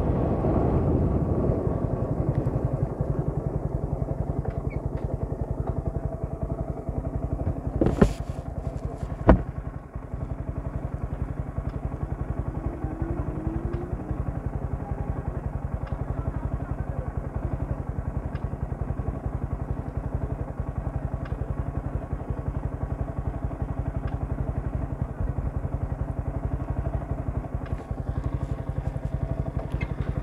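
Yamaha sport motorcycle's engine, louder at first and then running steadily with an even pulse as the bike comes to a stop. Two sharp knocks come about eight and nine seconds in.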